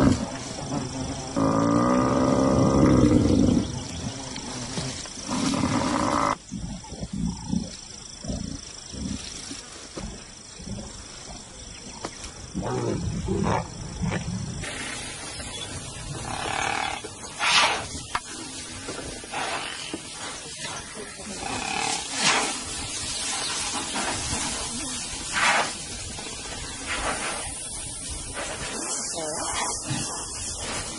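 Lions growling and snarling over a buffalo kill: several long, loud growls in the first six seconds, then softer growls. After about fifteen seconds, quieter scattered sounds follow.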